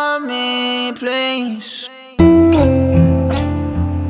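Music from a song: for about two seconds the bass drops out, leaving only higher pitched lines, then after a short dip the full band comes back in loudly with strummed guitar and bass.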